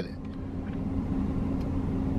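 Low, steady vehicle rumble with a faint hum, heard from inside a car's cabin, growing slightly louder.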